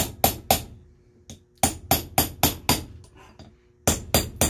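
Small hammer striking a steel punch, metal on metal, driving a part down into a TRW power steering pump housing to seat it. Sharp ringing taps come in two runs, three at the start and six more in the second half, about four a second.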